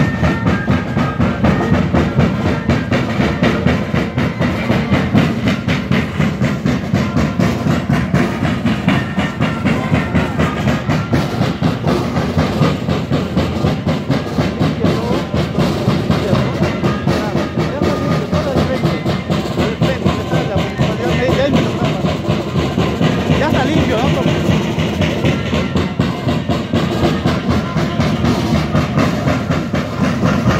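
Live carnival band of bass drums and snare drums playing moseñada dance music, with a dense, even beat that keeps going without a break.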